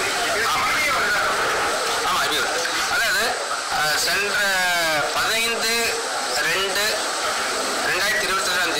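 Speech: a man talking in Tamil.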